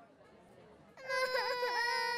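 Cartoon babies crying: a loud, high wailing cry that starts about halfway through and dips in pitch twice.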